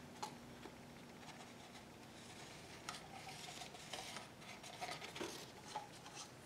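Faint scraping and light clicks of a stirring stick against a plastic cup as thick acrylic paint is layered into it, a few more clicks in the second half.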